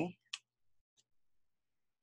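A small sharp click, then a fainter tick about a second in, with near silence around them.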